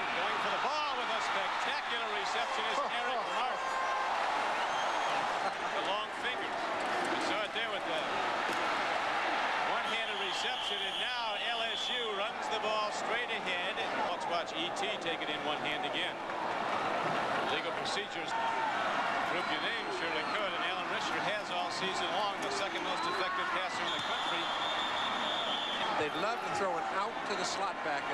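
Large stadium crowd noise: many voices cheering and shouting at once, steady and continuous. A couple of long, high whistle-like tones rise above it, about a third of the way in and again near the end.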